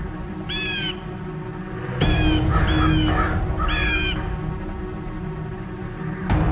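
A crow cawing four times, short harsh calls about a second apart, over low sustained background music, with a deep hit about two seconds in.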